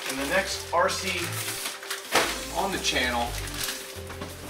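A man talking over background music with a steady electronic bass line.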